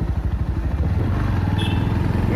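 Bajaj Pulsar NS160's single-cylinder engine running steadily as the motorcycle rides along, recorded from on the bike.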